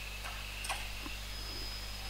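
A few faint, separate keystrokes on a computer keyboard as a word is typed, over a low, steady hum.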